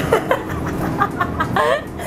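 A young woman laughing hard in a quick run of high, squealing gasps, several a second, over the steady low hum of a city bus.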